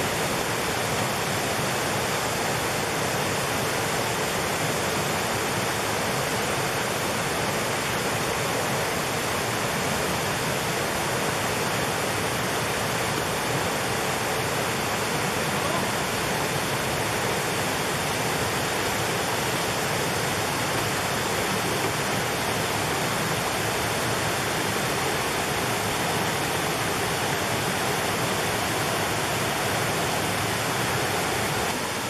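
Jungle waterfall and river cascade rushing over rocks, a steady, unbroken rush of water.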